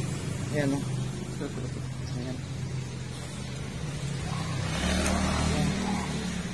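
A motor vehicle's engine running steadily, growing louder about two-thirds of the way through as it comes by on the road.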